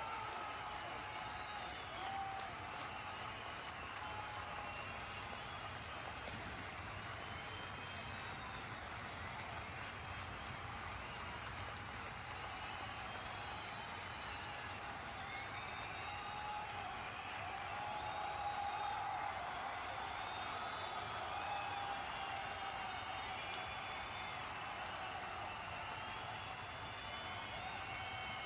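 Steady background hiss with faint, indistinct voices in the distance.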